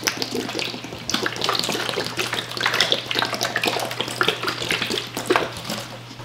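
Liquid developer squirted from a plastic squeeze bottle onto paper prints in a plastic developing tray, splashing and trickling in short, irregular spurts.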